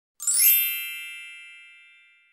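A single bright chime sting for an outro logo: it strikes about a fifth of a second in with a sparkle of high tones, then rings down and fades away over about two seconds.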